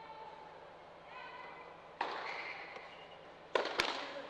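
Tennis ball struck by a racket in a reverberant indoor hall: a sharp serve hit about halfway in, then two quick sharp hits of the rally near the end, each followed by an echo.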